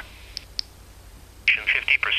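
Baofeng UV-5R handheld radio's small speaker: the NOAA weather broadcast voice cuts out while the push-to-talk button is held, leaving a low hum and two faint clicks, then the broadcast voice comes back through the speaker about a second and a half in.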